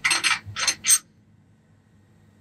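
Rusty steel bars and a steel pin clinking and scraping together as they are handled and fitted on a steel workbench. A quick run of four or five sharp metallic clinks, over within about a second.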